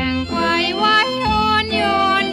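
A female singer starts a sung phrase with vibrato, moving between held notes over a dance-band accompaniment in a Thai popular song in waltz time.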